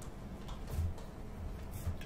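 A few faint, irregular clicks from a computer mouse being pressed and dragged to hand-draw letters on screen.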